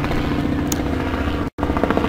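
Steady low mechanical hum of a motor running, cutting out to silence for an instant about one and a half seconds in.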